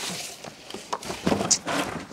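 Packing tissue paper and cardboard rustling as a canister vacuum is lifted out of its box. Brief clicks and knocks come from the plastic body in the second half.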